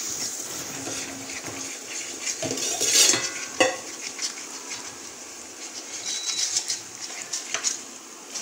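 Metal ladle scraping and knocking against a metal kadai while stirring a thick wheat-flour halwa mixture. The strokes are irregular, and the loudest scrape comes about three seconds in.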